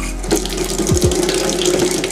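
Water running from a tap into a bathroom sink while a man washes his face: a steady rush that begins abruptly.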